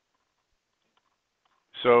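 Near silence with a few very faint clicks, then a man's voice starts to speak near the end.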